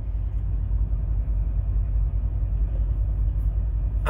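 Steady low rumble of an idling diesel engine, heard inside a semi-truck cab.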